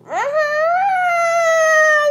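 A young girl's long, high whining cry, rising quickly at first and then held at one pitch for about two seconds. It is a fussing complaint that her food is too hot.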